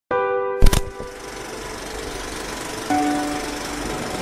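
Rapid mechanical rattle and crackle of an old film projector sound effect running under a vintage film-leader intro. It opens with a brief chord and a loud knock under a second in, and a short low tone sounds about three seconds in.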